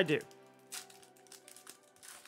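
Foil booster pack wrapper crinkling faintly as it is handled, a few short rustles, over quiet background music.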